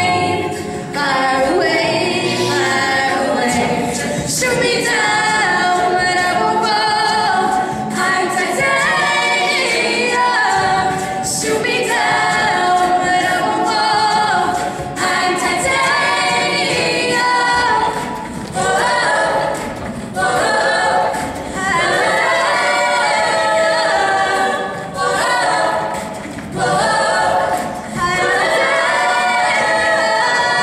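Mixed-voice a cappella group singing in layered harmony, with a few short breaks in the sound in the second half.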